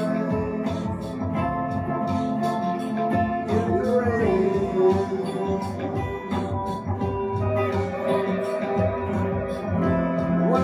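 Two electric guitars playing an instrumental break of a slow soul ballad. One is played with a brass slide, its notes gliding up and down in pitch about four seconds in.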